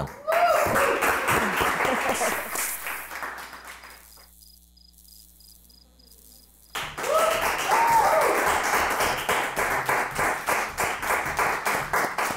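Studio audience applauding, with a few shouts mixed in, fading out over the first four seconds. After a brief near-quiet gap, the applause and shouts start again abruptly and carry on.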